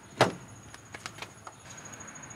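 A sharp click about a quarter second in, then a few faint ticks: someone handling the open door and interior of an SUV.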